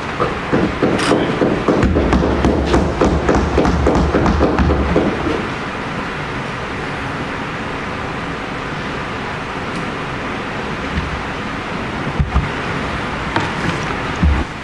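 Members of the House of Assembly thumping their desks in approval, a dense run of knocks lasting about five seconds, then steady chamber room noise with a couple of single knocks near the end.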